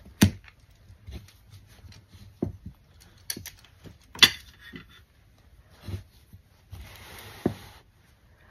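Plastic embroidery hoop being handled and removed from wool fabric: scattered light clicks and knocks, the sharpest about four seconds in, then a short rustle of a hand brushing over the cloth near the end.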